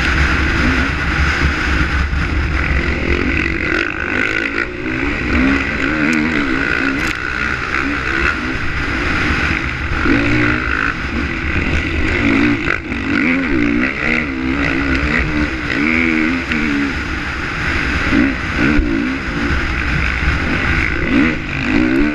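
KTM 450XC single-cylinder four-stroke dirt bike engine running hard at race pace, its revs rising and falling over and over with throttle and gear changes, under steady wind and riding noise.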